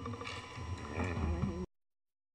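Faint room noise of people moving things about, with light clatter and a brief murmured voice about a second in. Then the audio cuts off abruptly to dead silence near the end.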